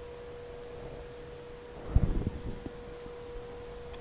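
A faint, steady high hum at one fixed pitch, with a few soft thuds about two seconds in.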